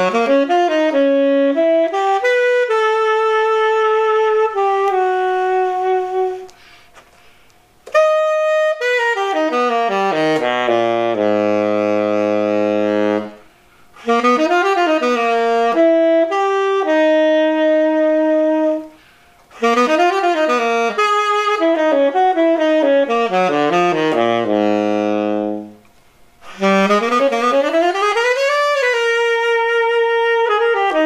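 Tenor saxophone played through a Vandoren T35 V5 mouthpiece: five phrases of quick runs and held notes, some reaching down to the horn's lowest notes, with short pauses for breath between them.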